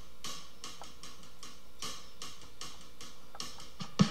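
Drum intro of a blues backing track: short hi-hat strokes in a steady rhythm, about two to three a second.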